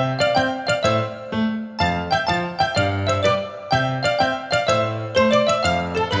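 Instrumental break of a children's song: a melody of short, quickly struck notes over a bass line, with no singing.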